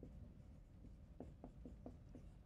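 Dry-erase marker writing on a whiteboard: a run of short, faint strokes that come quicker from about a second in.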